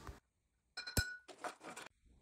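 Center punch striking a marked point on a metal pipe: one sharp metallic click about a second in that rings briefly, with a few lighter metal clinks around it.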